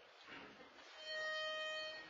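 A pitch pipe sounding one steady, reedy note for about a second, starting halfway through, giving a barbershop quartet its starting pitch before a song.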